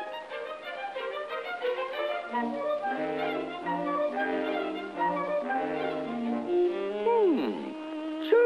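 Orchestral cartoon score with bowed strings playing a stepping melody. Low string notes join in about two seconds in, and a falling glide comes near the end.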